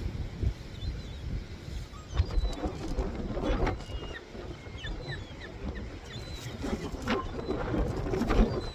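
Gusty wind buffeting the phone's microphone in an uneven low rumble, with a few short, high bird chirps scattered through.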